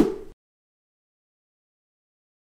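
Dead digital silence, after a brief unidentified sound that fades out within the first third of a second.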